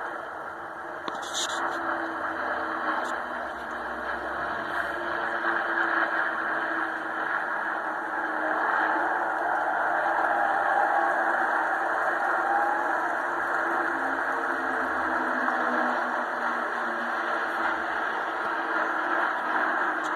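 Drone of the Battle of Britain Memorial Flight's piston-engined aircraft (a Lancaster, a Spitfire and two Hurricanes) passing over. It comes through a television's speaker and sounds muffled and noisy, swelling to a peak about halfway, then slowly fading.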